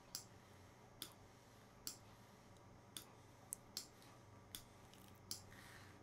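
Faint, sharp clicks of a computer mouse, about eight of them at irregular intervals of roughly a second, over a low room hum.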